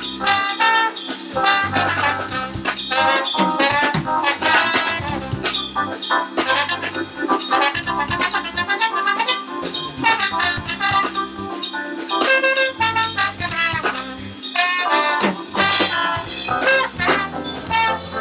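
Live jazz band playing: a trombone carries the melody over keyboard, electric bass and drum kit.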